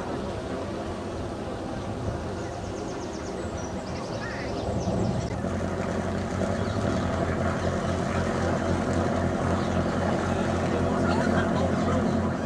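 Inboard engine of a vintage wooden motor launch (a Dunkirk Little Ship) running steadily at low cruising speed. It gets louder about halfway through as the boat passes close, with an even low throb.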